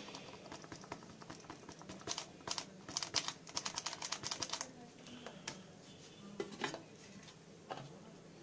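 A cardboard spice carton being tapped and shaken to sprinkle chicken masala powder out of it: a quick, faint run of light ticks from about two seconds in, stopping a little before five seconds, then a few single taps.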